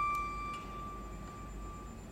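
A single high bowed-string note held steady and nearly pure, without vibrato, fading away near the end, with a couple of faint clicks early on.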